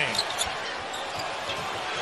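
A basketball being dribbled on a hardwood court, a few bounces heard over the steady noise of the arena crowd.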